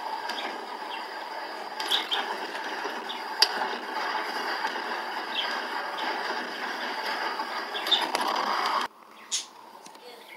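Steady road and cabin noise of a car driving at highway speed, with a few sharp clicks and rattles, cutting off abruptly about nine seconds in.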